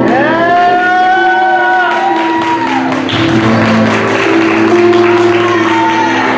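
Live pop-rock band playing: a long held note, possibly sung, swoops up at the start and falls away after about three seconds, over keyboard, bass guitar and drums.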